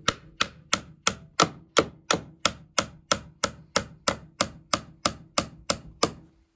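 Hammer driving nails into a wooden door frame: a steady run of sharp strikes, about three a second.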